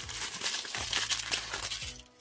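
Crinkling and rustling of thin packaging wrap being pulled open by hand, a dense run of crackles.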